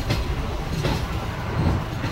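Passenger express train running, heard from on board: a steady rumble of the wheels on the rails, with a clack about once a second as the wheels cross rail joints and points.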